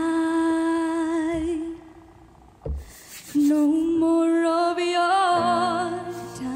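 A young woman's solo voice holding long, wordless sung notes with a wavering vibrato, in two phrases with a short break between them. Lower sustained piano or keyboard chords enter near the end.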